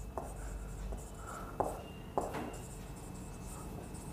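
Marker pen writing on a whiteboard: quiet scratchy strokes, with a couple of sharper ticks as the pen touches down, about one and a half and two seconds in.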